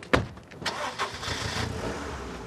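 A sharp thud, then a car engine starting and running with a low steady rumble.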